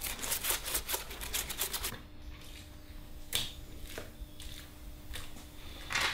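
Paper handled for papier-mâché: a quick run of crackling rustles for about two seconds, then a few scattered light taps and rustles. A faint steady hum comes in about two seconds in.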